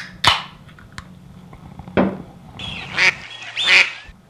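Wild waterfowl calling: a short call just after the start, another about two seconds in, and two more close together near the end.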